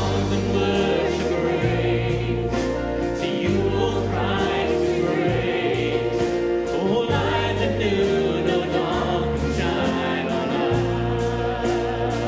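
Congregation singing a hymn together, accompanied by a band of strings, guitars and piano, with the bass moving between held notes every second or two.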